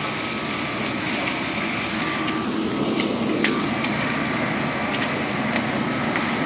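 Steady rushing noise at a burning garage fire being fought, with a few sharp cracks and pops about halfway through and near the end.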